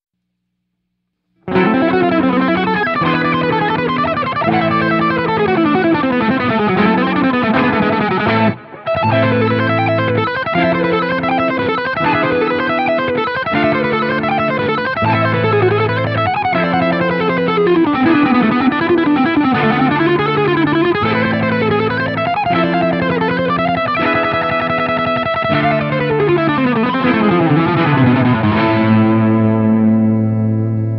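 Electric guitar playing a fast, alternate-picked jazz-fusion lick drawn from the A melodic and A harmonic minor scales, at full tempo, through effects with light distortion. It starts about a second and a half in, runs in quick rising and falling scale lines, breaks off briefly around nine seconds in, and settles onto held notes near the end.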